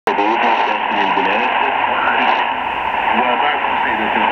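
Arabic-language speech from a China Radio International shortwave broadcast on 6100 kHz, heard through the loudspeaker of a Sony ICF-SW7600GR portable receiver. The audio is narrow and thin over a steady hiss of static.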